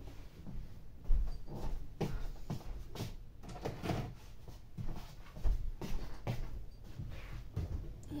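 Scattered knocks and clunks of a plastic storage box of yarn being handled and put away, with a heavier thump about a second in and another about five and a half seconds in.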